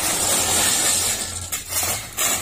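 Steel shovels scraping and digging into a truckload of crushed gravel while the stones pour off the truck bed, a continuous gritty rattle and hiss with a brief dip near the end.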